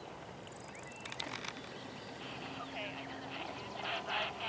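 Faint, indistinct voices over a radio, with a brief high buzzing trill about half a second in and a few light clicks just after.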